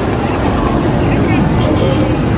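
Loud, steady arcade din: game sound effects mixed with crowd chatter.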